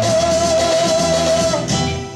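Live rock band with electric guitars, keyboards and drums playing the end of a song: one long held note over the band that stops about one and a half seconds in, as the song finishes.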